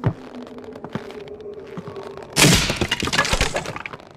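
Cartoon sound effect of the wooden planks of a rope bridge cracking and breaking: one sharp crack at the start, then about two and a half seconds in a loud splintering burst of several cracks that lasts over a second.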